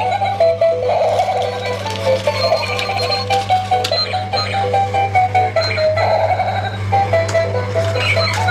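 Battery-powered dancing monkey toy playing a beeping electronic tune through its small built-in speaker: a quick melody of short stepped notes, quite loud.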